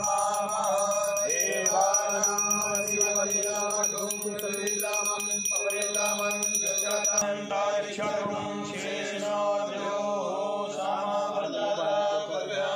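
A group of men chanting a Sanskrit mantra together in sustained, stepping tones. A high, steady ringing sounds over the chant and stops abruptly about seven seconds in.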